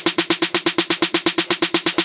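Dance-music remix build-up: a fast, even electronic snare roll of about nine hits a second, with a pitched tone under each hit.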